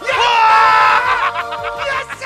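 A man's long, loud scream of joy, 'yattaaa!', held for about a second and then trailing off into further excited shouting, over background music.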